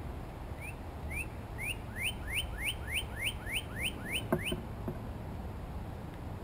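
Northern cardinal singing a series of about eleven upslurred whistles that come quicker and longer as the song goes on. Two sharp clicks follow near the end of the song.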